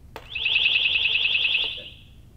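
A portable acoustic hailing device's built-in alert tone, played by holding its red button: a high, rapidly pulsing alarm tone lasting about a second and a half, then fading out.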